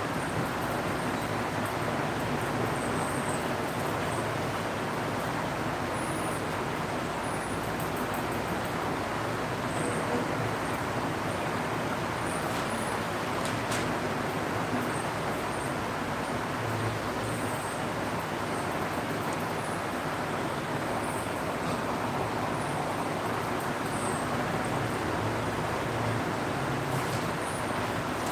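Steady background hiss of room noise, with no speech.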